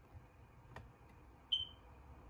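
A single short, high-pitched electronic beep about one and a half seconds in, preceded by a faint click about a second earlier.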